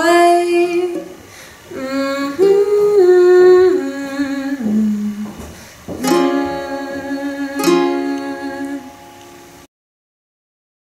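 A woman singing the closing lines of a song over a strummed ukulele. A chord is struck about six seconds in and again near eight seconds and rings on, then the sound cuts off suddenly just before the end.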